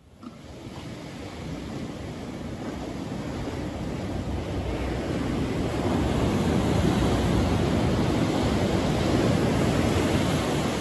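Ocean surf on a beach: a steady rush of breaking waves that fades in and grows louder over the first six seconds, then holds.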